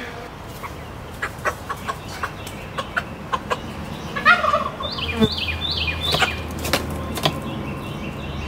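Cornish Cross broiler chicken clucking and squawking in a quick run of short, falling calls while being caught and carried, starting about halfway through. Before that, a few light clicks and knocks.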